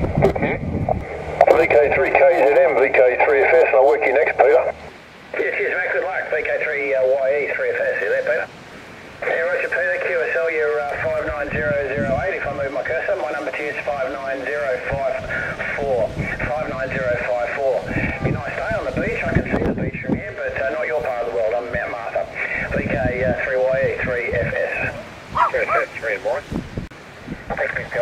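Voices of distant stations coming through an amateur transceiver's speaker on 2 m SSB, thin and band-limited like radio speech, with a brief gap about nine seconds in. Wind on the microphone adds low rumbling gusts in the second half.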